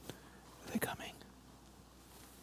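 A brief, faint whisper or low murmured word about a second in, over quiet room tone.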